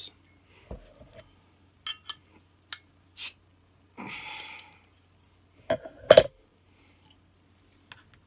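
A metal bottle opener working the crown cap off a glass soda bottle: small clicks and scrapes, a short hiss about four seconds in, then two sharp clinks, the loudest sounds, about six seconds in.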